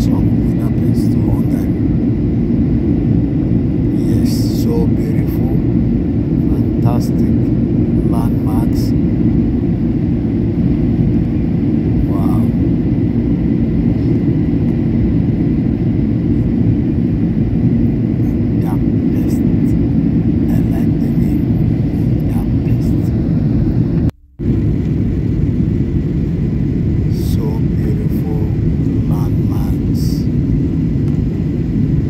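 Steady airliner cabin noise during descent: a deep, even rush of engines and airflow, with faint voices in the background. The sound drops out for a moment about two-thirds of the way through.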